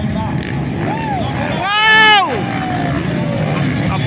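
Motocross dirt bike engines running as a steady rumble. About halfway through, one loud, high whoop rises and then falls.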